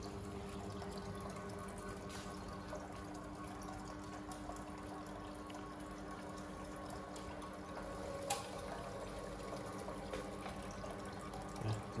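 Desktop filament extrusion line running: a steady machine hum with several level tones under a hiss like running water from its cooling-water trough. A single sharp click about eight seconds in.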